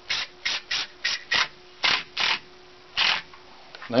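Cordless impact driver driving a screw into a plywood board, run in a series of short trigger bursts that stop a little over three seconds in as the screw seats.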